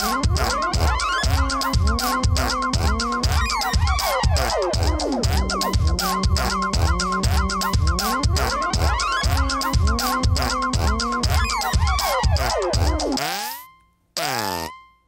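Electronic drum track of synthesized kick drums and drums run through the Rhino Kick Machine plug-in, with a Mojito synth patch that sounds like a wet fart gliding up and down in pitch over a steady beat. The whole mix fades out near the end.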